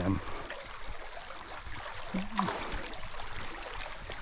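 Creek water running and trickling steadily, with a short wordless vocal sound from a person about two seconds in.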